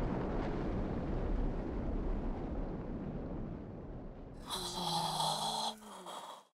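Deep, noisy rumble of a volcanic eruption sound effect, fading away over about four seconds. Near the end comes a short, drawn-out voice-like 'wow'.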